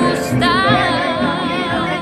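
Background music: a song whose melody line wavers with strong vibrato, entering about half a second in over an evenly repeating bass.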